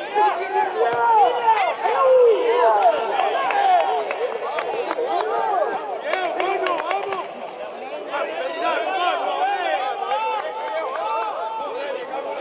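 Many voices talking and shouting over each other, players and spectators at an amateur football match, with no single voice clear.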